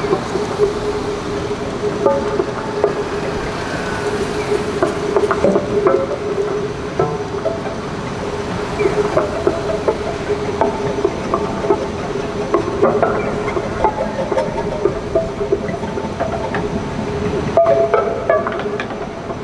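Free-improvised music for violin, cello and two acoustic guitars: a steady held tone runs underneath while scattered plucked guitar notes and small taps come and go, growing busier in the second half.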